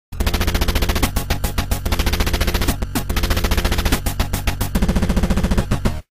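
A loud, rapid run of sharp rattling hits, like machine-gun fire, over a low steady drone. It cuts off suddenly at the end.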